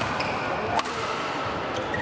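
Badminton racket striking a shuttlecock once during a doubles rally, a single sharp smack a little under a second in. A brief shoe squeak on the court floor comes just before it.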